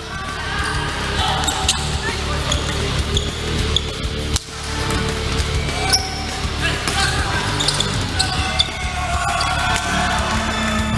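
Natural sound of an indoor basketball game: a basketball bouncing on a hardwood court, with short high squeaks and crowd voices, under background music.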